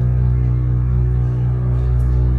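Ambient music: a steady, deep drone of layered sustained tones, without percussion.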